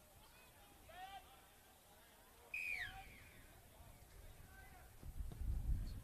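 Faint, distant voices and calls from a rugby league field, with one louder, higher falling call about two and a half seconds in. Wind rumbles on the microphone near the end.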